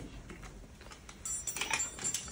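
A few light metallic clicks with a faint high ringing, starting a little over a second in, from a metal ambulance stretcher's frame being handled. Before that only quiet room tone.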